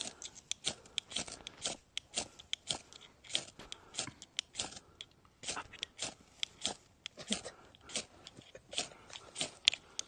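Dry wood and tinder being worked by hand to start campfires: knives shaving sticks and a ferro rod being struck, giving irregular sharp crunching scrapes, several a second.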